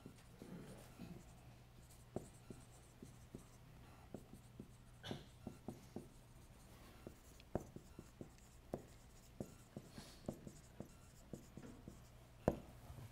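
Faint sound of a dry-erase marker writing on a whiteboard: a run of short, irregular ticks and squeaky strokes as the letters of a sentence are formed.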